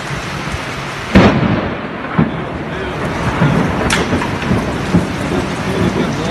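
Heavy rainstorm with wind heard inside a storm-wrecked hangar, a steady noise, with one loud bang about a second in and a few sharper knocks later.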